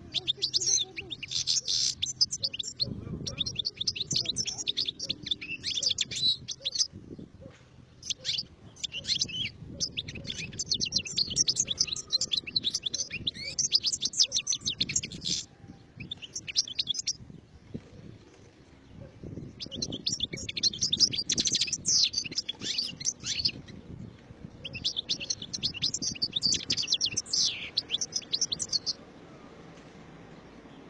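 European goldfinch singing: fast, high twittering phrases in several long bouts, broken by short pauses.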